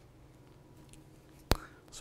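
Quiet room tone, broken about one and a half seconds in by a single sharp click.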